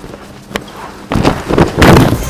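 Wrestlers' feet scuffing and stamping on a padded wrestling mat, with their canvas jackets rustling as they grapple. It is quiet for the first second, then grows loud and irregular, loudest just before the end.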